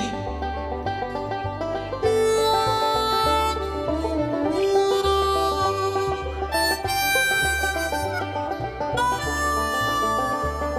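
Instrumental break in a country song, with no singing: a lead instrument plays long held notes over a steady, repeating bass beat.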